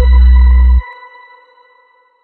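Electronic outro jingle ending: a deep, bass-heavy beat cuts off suddenly under a second in, leaving a high ringing tone that fades away.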